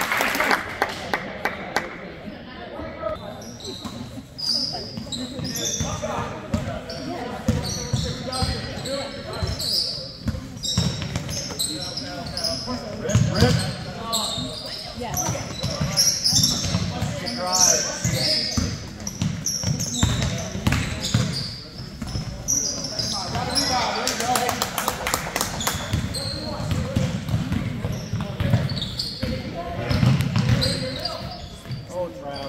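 Basketball game sounds in a gym: a basketball bouncing on the hardwood floor, sneakers squeaking and indistinct voices of players and spectators, all echoing in the large hall.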